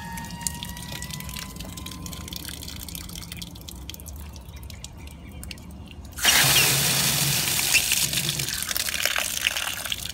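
Water suddenly gushing out of the valve's relief port about six seconds in, running on as a steady loud rush. Before it, a faint high whistle fades away in the first second or two as a small lever valve on the supply pipe is turned.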